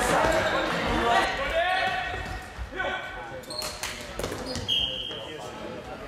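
Floorball game sound in a sports hall, echoing: players shouting, and the clack of sticks and ball with sharp knocks a few seconds in. Near the end a short, high whistle blast sounds.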